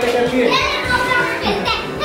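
Children playing and calling out excitedly, with background music.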